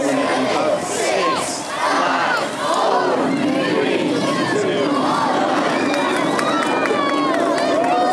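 Crowd of spectators cheering and shouting, many voices overlapping.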